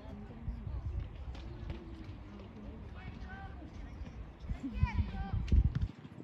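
Distant high-pitched shouts and calls from young football players across the pitch, over a low rumble on the microphone, with a few louder thumps near the end.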